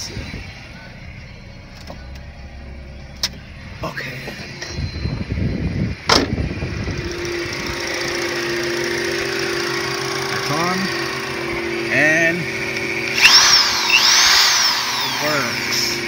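Mini Cooper's four-cylinder engine cranked by the starter for about two seconds, catching about six seconds in and then idling steadily. Near the end a corded electric drill powered through the inverter spins up and slows several times over the idle.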